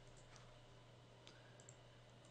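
Near silence with a few faint computer mouse clicks over a low steady hum.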